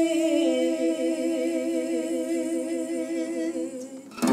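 A voice humming a long held note with vibrato, stepping down to a lower note about half a second in and fading out near the end.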